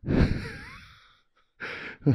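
A man's long sigh, breathed close into a handheld microphone, starting sharply and trailing off over about a second, followed near the end by a short breath.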